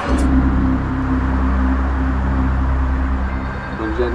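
A steady low drone of background music: a few held tones over a deep rumble.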